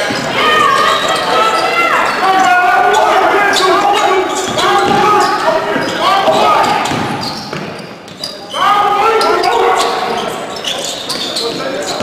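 A basketball being dribbled on a hardwood gym floor during live play, with voices echoing around the hall.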